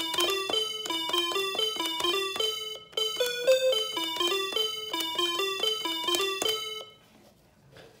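AR-7778 musical calculator's key tones: each key press sounds a short electronic note, played fast at about four notes a second as a repeating four-note figure. The notes stop about seven seconds in.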